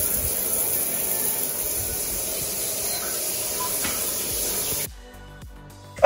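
Shower running: a steady hiss of water spraying onto a tiled shower, cutting off suddenly about five seconds in.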